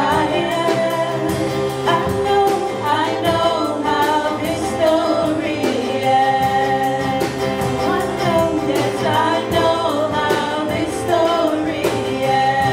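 Live worship band playing a song: lead vocals sung over acoustic guitar and a drum kit, with a steady beat.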